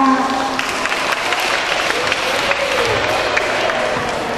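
An audience clapping: many hands in a dense, irregular patter, with voices faintly under it.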